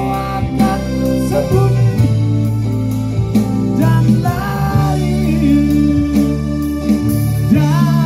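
Live band music: a man singing into a microphone over a Yamaha PSR-S970 keyboard, guitar and drums.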